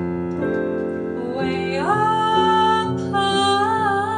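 A woman singing a ballad with piano accompaniment. For the first second and a half only the piano's chords sound; then the voice comes in, sliding up into a long held note that takes on vibrato near the end.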